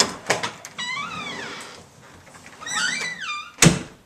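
Door latch clicking as a front door is opened, then a cat meowing twice in long rising-and-falling calls, and the door shutting with a loud thud near the end.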